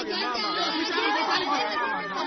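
Several people's voices at once, talking and calling out over one another.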